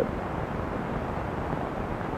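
Steady, even background noise with no distinct sound events.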